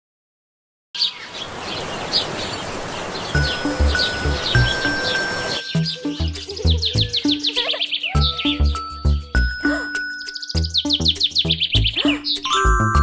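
About a second of silence, then birds chirping rapidly over a steady outdoor hiss. Just past halfway, light children's background music with plucked bass notes and chimes comes in, and the chirping carries on over it.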